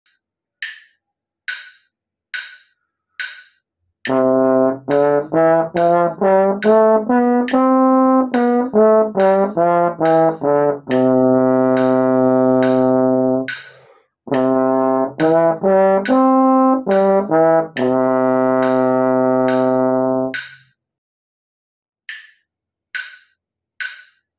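A metronome clicks four times as a count-in, about one click a second. Then a tenor trombone plays a C major scale in eighth notes ending on a long held note, and after a short breath a C major arpeggio, also ending on a held note. The metronome keeps clicking under the playing and carries on alone near the end.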